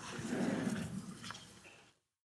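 A large audience murmuring "amen" together, the congregation's response to the speaker's closing prayer. It swells briefly, then fades out to silence just before the end.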